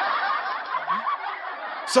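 Laughter from several people at once, like a studio audience laugh track, tapering off slightly toward the end.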